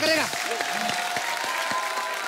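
Studio audience applauding, a dense steady clapping that starts just after a line of speech ends.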